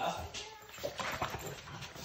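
French bulldog giving a few short, soft whines, one rising briefly about a second in.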